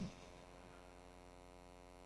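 Near silence with a faint, steady mains hum.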